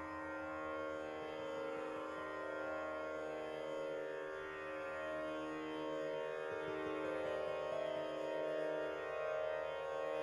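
Hindustani classical instruments sounding sustained notes over a steady drone: plucked sitar-type strings and harmonium, with no clear tabla strokes.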